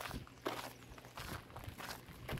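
Footsteps on gritty concrete, about four steps in two seconds.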